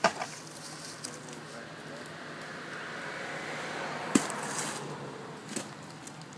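A sewer-plunging pole knocks once in the cleanout pipe, then a steady rushing hiss of sewage water running through the freshly opened line swells and fades, with another sharp knock about four seconds in.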